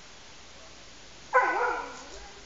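A dog gives a single short yelp-like call a little past halfway, about half a second long, its pitch wavering and falling.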